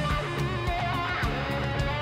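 Live band music, mostly instrumental, with strummed guitar over bass.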